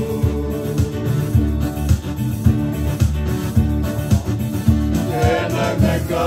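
Electronic keyboard and strummed acoustic guitar playing an instrumental passage of a song, with a man's singing voice coming back in about five seconds in.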